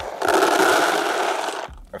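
Dry floating pellets pouring out of a bag into a bait bucket: a dense rush that lasts about a second and a half and stops abruptly.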